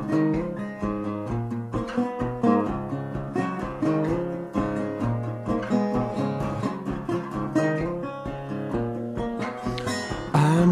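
Instrumental break on acoustic guitar: a run of plucked and strummed notes with no singing.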